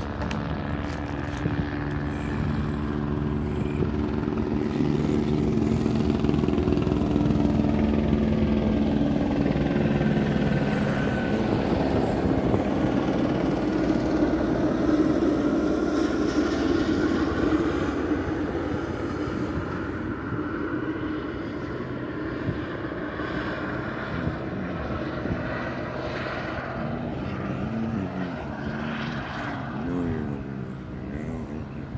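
An aircraft flying low overhead with a steady engine drone. It grows louder to a peak about halfway through, then slowly fades, its pitch gliding as it passes.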